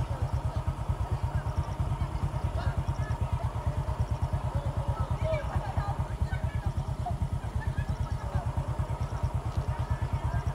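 An engine idling close by, a steady low chugging of about a dozen pulses a second, with faint voices over it.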